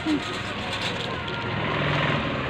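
Steady low rumble of a car engine running close by, with brief voice fragments over it.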